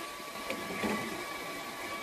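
Hair dryers and fan heaters running together at full load: a steady whooshing fan noise with a thin, steady high whine over it.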